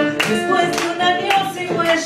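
Live Argentine folk music: two acoustic guitars strummed with sharp percussive strokes, a violin and a woman singing.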